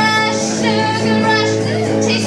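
A woman singing a song live, accompanied by a strummed electric guitar.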